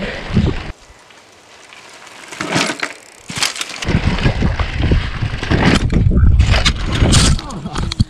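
Mountain bike ridden fast down a dirt trail, with tyres rolling over dirt and the bike rattling, quieter for a moment about a second in. It ends in a crash near the end as the rider goes over the front nose first.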